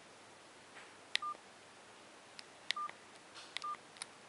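Keypad of a CSL Euphoria One DS720 candy-bar mobile phone being pressed: three key clicks, each followed by a short high beep of the phone's key tone.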